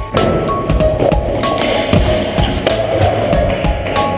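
Music with a steady drum beat, over skateboard wheels rolling along a smooth floor with a continuous rumbling roll.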